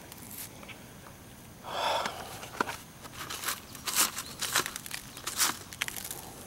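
Close handling noise: a short rustle about two seconds in, then an irregular run of sharp clicks and rustles as bean leaves are pushed aside and a plastic bucket of soil is moved, with a few footsteps.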